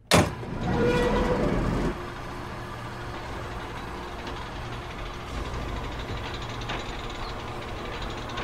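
A sharp metallic clang as a heavy round floor hatch is pulled open, then a loud rushing noise for about two seconds. After that comes a steady, low mechanical drone from the shaft below.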